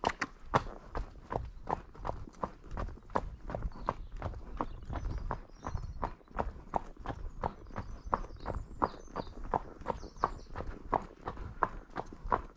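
A horse's hooves trotting on a tarmac road: a quick, even run of hard clip-clop strikes.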